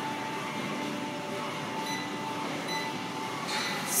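Steady room noise of a gym with a faint held tone running through it; near the end a woman's voice begins.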